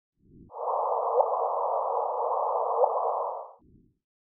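LIGO's gravitational-wave signal from two merging black holes, converted to sound. Over a steady hiss, a brief rising chirp is heard twice, about a second in and again near the end.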